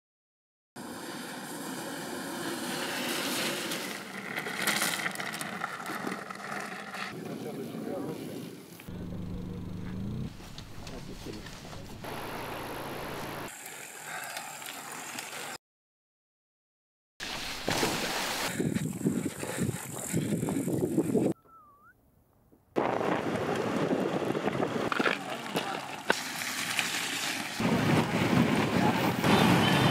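Mountain bikes riding on dirt and grass tracks, with riders' voices and outdoor noise, in several segments separated by sudden cuts to silence.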